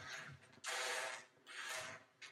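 Dry snack-mix pieces (pretzels and cereal) scraping and rattling across a countertop as they are swept with a bare foot, in two bursts: a longer one just before the middle and a shorter, quieter one after it.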